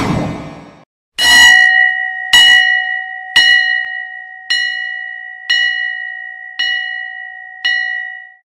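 A bell struck seven times, about once a second, each strike ringing on with the same clear tones into the next and growing slightly quieter through the series. A short fading noise comes before the first strike.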